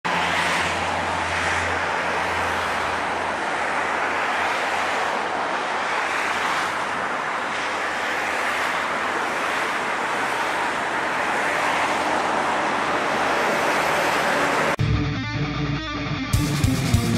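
CN-235 military transport aircraft's two turboprop engines and propellers running as it rolls along the runway: a loud, steady rushing noise with a low hum at first. Near the end it cuts off suddenly and guitar music starts.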